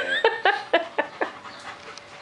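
German Shepherd panting in quick, even breaths, about four a second, fading over the first second and a half.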